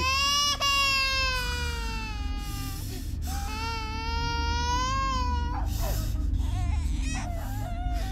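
Infant crying hard: two long wailing cries of a couple of seconds each, then shorter broken cries, over a steady low hum.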